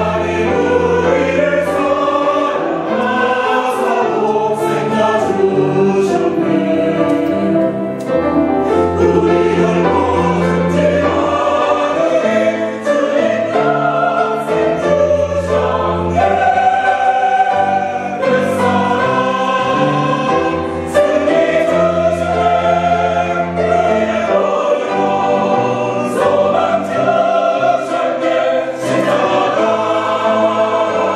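Mixed choir of men's and women's voices singing a hymn in parts, with sustained full-voiced phrases.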